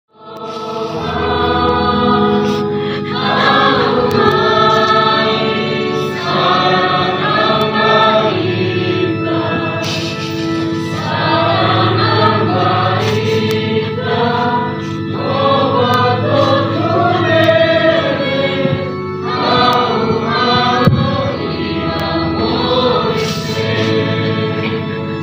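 A group of soldiers singing a psalm together in phrases of a few seconds with brief breaks between them, over sustained low notes.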